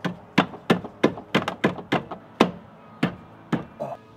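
A BMW E30 brake booster being worked into place against the car's sheet-steel firewall and its new mounting plate: a quick, irregular run of about a dozen sharp metal knocks and clunks, the loudest about two and a half seconds in.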